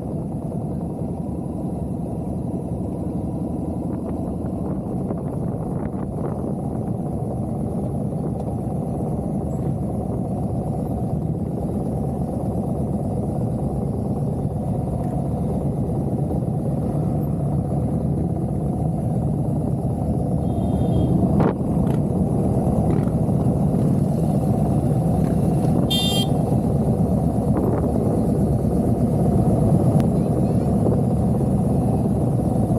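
Yamaha Bolt's air-cooled V-twin running at low road speed, heard as a steady low rumble through a helmet-mounted microphone. A brief high-pitched beep sounds about 26 seconds in.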